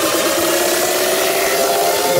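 Electronic dance music build-up: a synth riser climbing steadily in pitch over a wash of noise, with the kick drum dropped out, building toward the drop.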